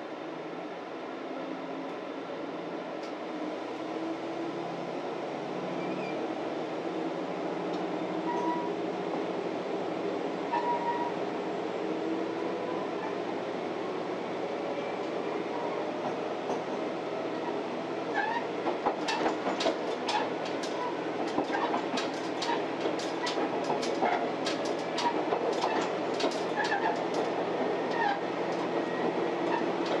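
Diesel railcar heard from inside, pulling away from a station: the engine note climbs steadily as it accelerates, and from a bit past the middle the wheels start clicking over rail joints, the clicks coming thicker as the train gains speed and the sound grows louder.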